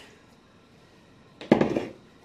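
One short clatter of kitchenware about one and a half seconds in, after a faint lull, as chili is dished from a stainless steel pot with a wooden spoon into ceramic bowls.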